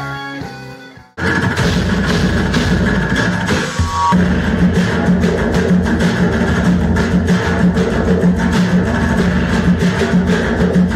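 Live music: a band with acoustic guitars and electric bass fades out, and about a second in it cuts abruptly to a percussion group beating painted drums with sticks, a fast, dense drumbeat over a sustained low note.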